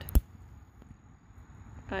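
A single sharp snap of a dry, dead hydrangea stalk broken by hand, a fraction of a second in.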